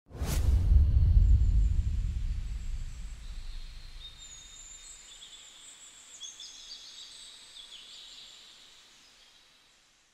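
Intro sound effect: a sudden deep boom that dies away over several seconds, with high, thin chirping or twinkling tones above it that fade out near the end.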